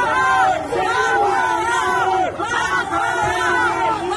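A street crowd shouting and yelling over one another, many raised voices at once.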